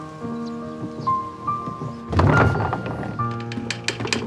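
Background music with held notes. About two seconds in, a wooden door is shoved open with a loud thump and rattle, followed by a run of light knocks.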